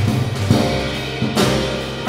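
Small jazz combo playing, with the drum kit and upright bass to the fore: cymbal crashes about half a second in and again past the middle over walking low bass notes.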